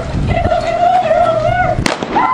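A woman's long, high-pitched shriek of fright, held on one slightly wavering pitch, with a single sharp click near the end.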